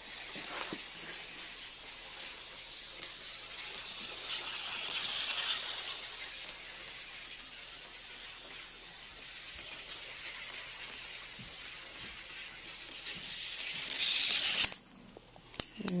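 Glass marbles rolling down a marble run of plastic model railroad track. The rolling noise is continuous, grows louder about five seconds in and again near the end, then stops abruptly about a second before the end.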